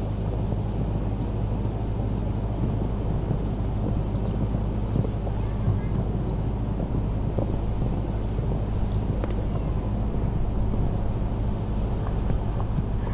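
Steady low background rumble of an outdoor venue, with a low hum running under it and no distinct event.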